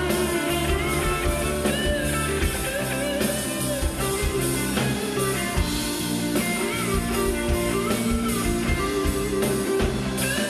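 Live rock band music: an electric guitar carries the melody over a steady drum kit beat, with no singing.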